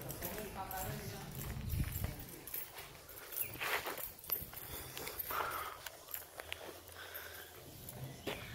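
Footsteps on a concrete patio, a scatter of soft irregular steps, with faint indistinct voices in the background.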